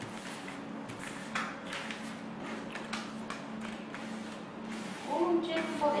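Picture cards being dealt one after another onto a wooden tabletop: a string of light taps and slides over a low steady hum.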